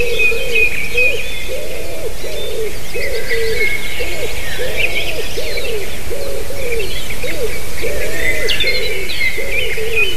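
Birdsong at dawn: a continuous run of low cooing notes, about two a second, under the higher chirps and trills of small songbirds.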